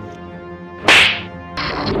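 An edited-in whip-crack sound effect, one sharp loud crack about a second in, followed by a steady hissing effect that starts about half a second later.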